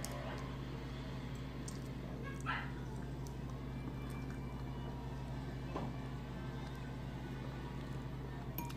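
Quiet room tone: a steady low electrical hum, with a brief faint squeak about two and a half seconds in and a soft click near six seconds.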